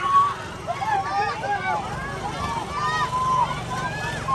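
Many voices calling and chattering over one another, with a steady low rumble underneath.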